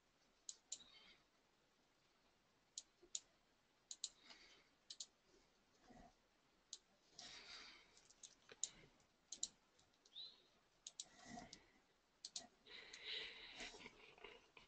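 Near silence with many faint, irregularly spaced computer mouse clicks.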